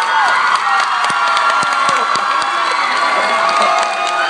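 Audience cheering and screaming, many high voices held at once, with scattered claps.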